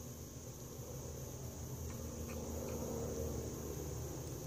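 Faint handling noise from metal tweezers lifting ants and dropping them into the nest, with a few light ticks about two seconds in, over a steady high-pitched hiss.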